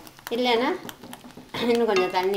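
A person's voice speaking in two short phrases, with a few faint clicks in the pause between them.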